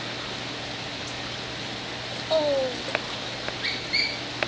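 Backyard outdoor ambience: a steady hiss, a short falling call a little past halfway, and a few short high bird chirps near the end.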